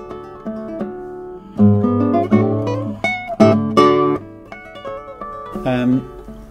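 Michael Ritchie classical guitar played fingerstyle, its plucked notes left ringing over one another, with a few louder chords struck in the middle.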